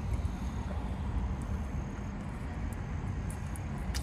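Steady low rumble of a vehicle heard inside a car cabin, with a few faint clicks and taps from a dipping-sauce cup being handled.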